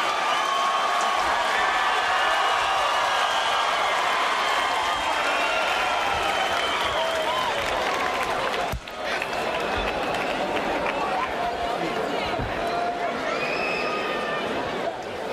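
Arena crowd at a boxing match cheering and applauding, many voices shouting over one another at the end of a round. The crowd noise drops out briefly about nine seconds in.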